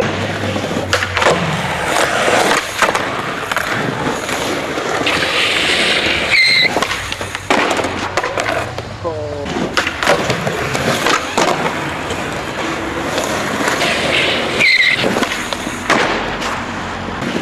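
Skateboard rolling on stone paving, with repeated sharp clacks of the board popping, landing and hitting the ground as tricks are tried.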